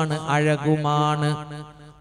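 A man's preaching voice, intoned in a drawn-out, sing-song way with long syllables held on a steady pitch, fading away near the end.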